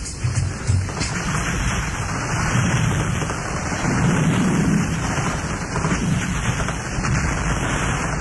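A hip-hop beat's drum hits stop about a second in, giving way to a steady rain-and-thunder sound effect, with a low rumble swelling around the middle.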